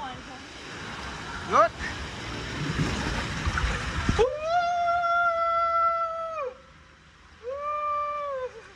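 Rushing water and rumble in an enclosed water-slide tube as a rider sets off, with a short rising whoop about a second and a half in. After an abrupt change, the rider lets out a long held yell, then a shorter second one near the end.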